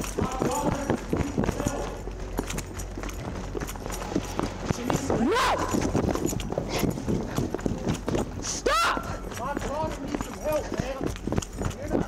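A police officer's body camera jostling during a foot chase: a quick run of footfalls and knocks, with brief shouted voices about halfway through and again later.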